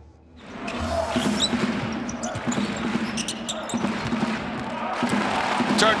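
Live basketball game sound fading up about half a second in: a ball bouncing on a hardwood court amid arena noise, with a steady low hum underneath.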